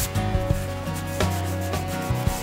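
A cloth rubbing back and forth across a melamine board, wiping off excess soft wax.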